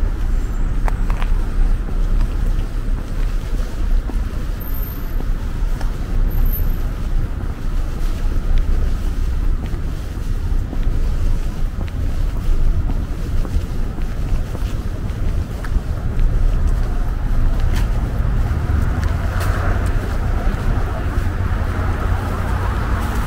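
Street ambience: wind rumbling on the microphone over steady road traffic.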